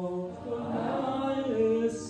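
A congregation singing a slow worship song together, holding long notes that move from pitch to pitch.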